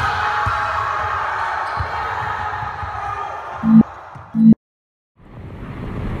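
A long fading wash of noise, then two basketball bounces on a gym floor a little under a second apart, about four seconds in. After a moment of dead silence, a rising whoosh transition effect.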